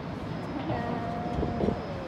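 Steady rumble of distant city traffic, with a faint held tone for about a second in the middle.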